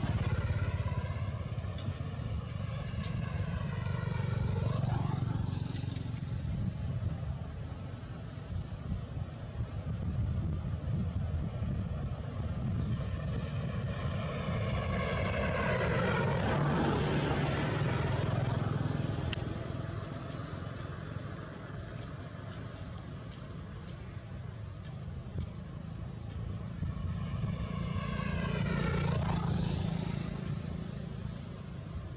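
Motor vehicles passing by, about three times and loudest around the middle, over a steady low traffic rumble.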